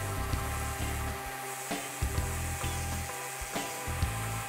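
Mirka random orbit sander with fine-grit paper and a dust-extraction hose running steadily across a walnut panel, a continuous hiss, with background music over it.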